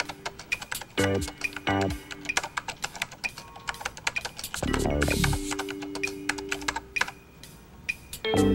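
Fast typewriter-like key clicks as text types out letter by letter on a computer screen, over a synthesizer music cue with a few short notes and a held low chord about five seconds in.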